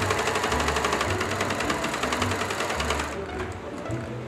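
Pfaff electric sewing machine stitching fabric at speed, a rapid even run of needle strokes that stops about three seconds in.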